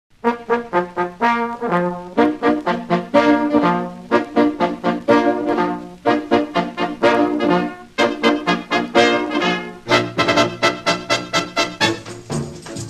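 Instrumental dance-band music led by brass, trombones and trumpets playing phrases of short, punchy notes in a bouncy rhythm.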